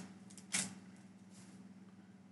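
Pokémon trading cards and their foil booster pack being handled: one short crisp rustle about half a second in, then a few fainter rustles over a low steady hum.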